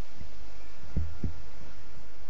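A few low thuds from a microphone being handled and adjusted on its stand, two close together about a second in, over a steady low hum from the PA.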